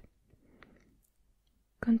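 A soft click, then a near-silent pause with a faint brief rustle. About two seconds in, a woman's soft, close-miked voice resumes reading aloud in French.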